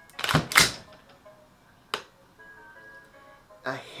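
Trigger mechanism of an EMG CGS Noveske N4 gas blowback airsoft rifle worked on semi with no slack: a loud double clack shortly after the start, then a single sharp click about two seconds in as the trigger resets, a hairline reset.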